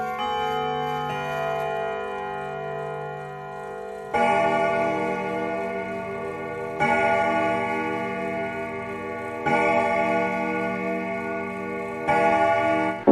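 A chiming clock: a few ringing bell tones change pitch in a short tune, then from about four seconds in, deeper strikes fall about every 2.7 seconds, each ringing out and fading, as a clock strikes the hour.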